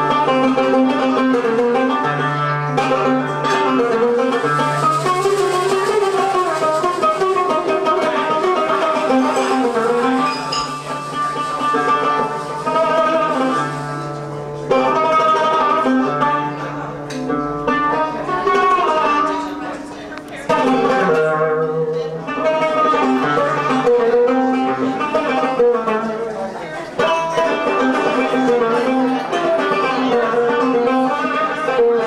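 Live Middle Eastern band music for belly dance: a plucked oud and a clarinet carrying a winding melody over a steady low drone, with darbuka accompaniment.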